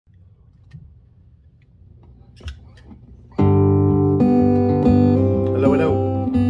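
A few faint clicks and taps, then about three and a half seconds in a strummed acoustic guitar intro starts suddenly and rings on loudly with held, chiming chords.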